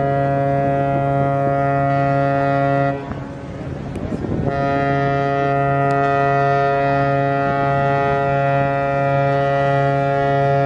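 Ship's horn of the passenger ferry M/V St. Thomas Aquinas. It sounds a deep, steady blast that stops about three seconds in, and after a short gap a second long blast begins and is still sounding at the end.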